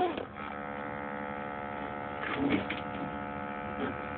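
Steady electric whine from a scale RC crawler's motor and speed controller while the truck stands still, with a short extra sound about halfway through.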